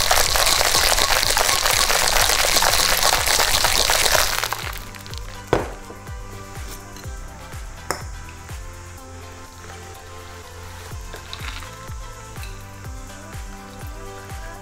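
Ice rattling hard inside a metal cocktail shaker being shaken vigorously for about four and a half seconds, then stopping. Two sharp clicks follow a few seconds later.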